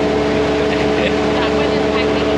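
Passenger ferry's engine machinery droning steadily: a low hum under a few steady tones.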